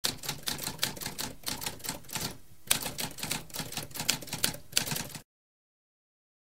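Mechanical typewriter keys clacking in a rapid run of keystrokes, with a brief pause about two and a half seconds in. The typing stops abruptly a little after five seconds.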